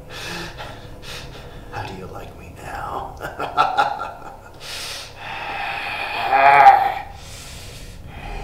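A man laughing in gasping bursts with sharp breaths in between. The loudest, longest laugh comes about six and a half seconds in.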